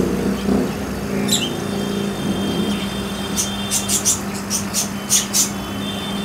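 Steady low electrical hum of aquarium pumps and filters. Over it come a short falling chirp about a second in and a quick run of high-pitched chirps or squeaks in the second half.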